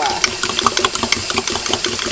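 A metal fork whisking flour and water in a ceramic mug, its tines clicking rapidly against the inside of the mug, several clicks a second. The flour slurry is being mixed to thicken a soup.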